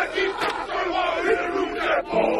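A large group of men shouting a war chant together in the manner of a haka, many voices overlapping.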